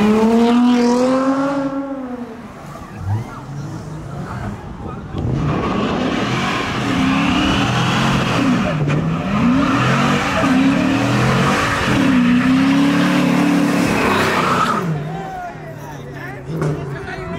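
A car doing a burnout: the engine revs up over the first couple of seconds. From about five seconds in, the revs rise and fall repeatedly while the spinning tyres squeal and smoke. The tyre noise cuts off suddenly near the end.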